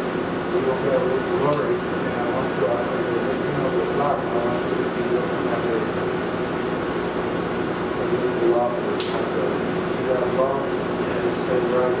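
Steady hum of operating-room equipment during LASIK eye surgery, with a thin high steady tone over it, and low murmured voices coming and going.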